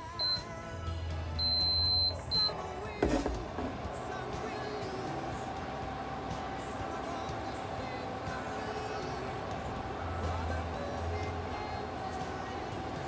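An electric cooktop's control panel beeping as it is switched on to start cooking: a short beep, a longer one, then another short one. A single knock follows about three seconds in, then a steady background sound.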